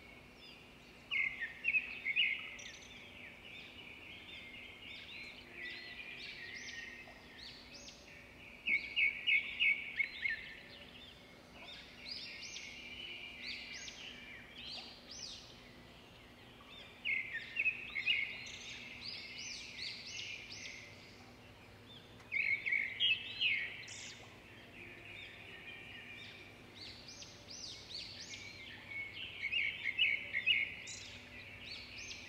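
A flock of American robins calling, with loud bursts of rapid high chirps every five to eight seconds and quieter chirping in between.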